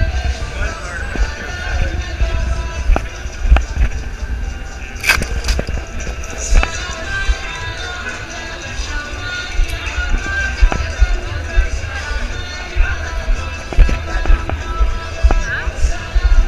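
Busy city-square ambience: crowd chatter and music in the background, under a steady low rumble and scattered knocks from a body-worn camera being carried on the move.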